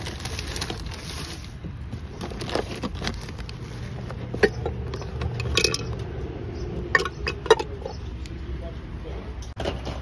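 Yard-sale finds being handled in a tote bag: bubble wrap crinkles for the first second or so, then ceramic and glass pieces clink and knock together several times, over a steady low rumble.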